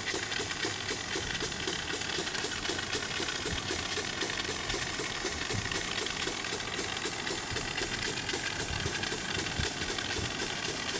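Compressed-air-foam backpack sprayer discharging pepper-spray foam through its nozzle: a steady hissing rush with a fast, even pulsing, as the tank is run until empty.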